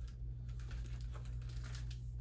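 Pages of a softcover graphic novel being leafed through by hand: a string of soft, irregular paper clicks and rustles, over a steady low electrical hum.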